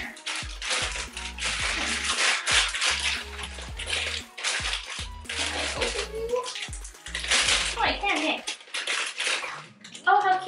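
Clear plastic bag crinkling and rustling in short handfuls as a baby bottle is worked out of it.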